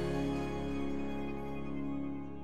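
Programme theme music closing on a long held chord that slowly fades.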